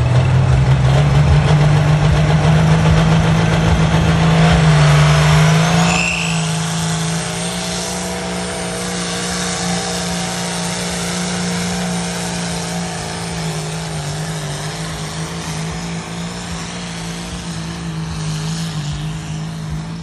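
John Deere 4320 pulling tractor's diesel engine running flat out as it pulls the sled down the track, its pitch climbing over the first five seconds and then holding steady. A high whistle rises briefly around five seconds in, and the engine gets somewhat quieter after about six seconds as it moves away.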